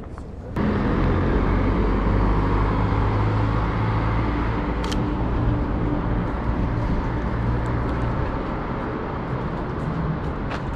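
Street traffic with a motor vehicle engine running close by, a steady low hum under road noise that starts abruptly about half a second in. A single short click about five seconds in.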